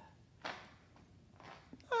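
Mostly quiet: a brief breathy spoken 'uh' about half a second in, followed by a faint soft rustle of the phone in its snug plastic case being handled and turned over.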